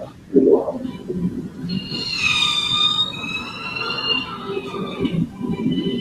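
High-pitched whine of an electric race car's motor, rising in from about two seconds in, holding for about three seconds and sliding slightly down in pitch as it passes, under a low murmur of voice.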